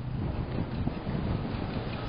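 Wind buffeting the microphone: a steady, gusty low rumble with a faint hiss.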